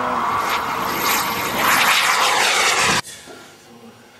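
Jet aircraft running loud as it passes low along a runway, its whine falling in pitch as it goes by. It cuts off suddenly about three seconds in.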